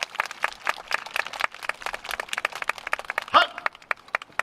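Audience applause: many irregular hand claps that thin out toward the end, with a short voice calling 'hai' a little over three seconds in.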